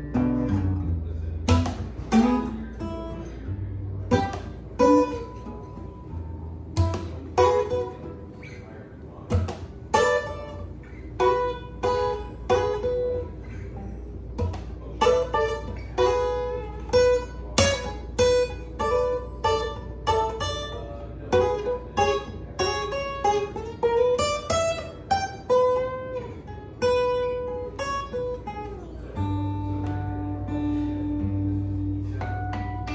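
Martin D-18 acoustic guitar played solo, with no singing: sparser strummed chords for the first several seconds, then a busier picked melody of single notes over the chords, with a few notes sliding in pitch past the middle.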